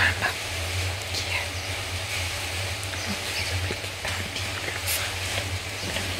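A woman's voice speaking softly, close to a whisper and too indistinct for words, over a steady low hum.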